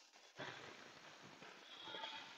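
Near silence: faint background hiss of the room and recording.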